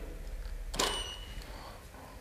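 A single click of a Canon EOS R5 mirrorless camera's shutter about a second in, followed straight away by a short, thin high beep lasting about half a second.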